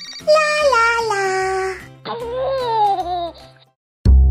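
Two long falling wails like a baby's whimpering cry, over light background music, then the sound drops away just before the end.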